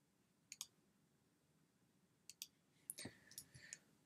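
Near silence broken by a few faint clicks from working a computer: two just after half a second in, then a scattered handful in the last second and a half.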